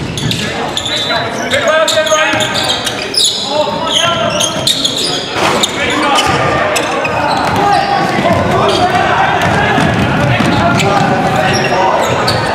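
Basketball game sounds in a large echoing gym: a ball bouncing on the hardwood floor and players calling out to each other, with many short sharp knocks and squeaks from play on the court.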